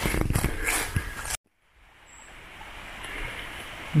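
Footsteps crunching and rustling through dry fallen leaves on a forest trail. After about a second and a half the sound cuts off abruptly, and a faint steady hiss fades in.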